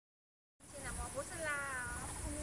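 A young child's high-pitched voice, starting after half a second of silence, ending in a drawn-out call that falls in pitch. A steady high-pitched hiss runs underneath.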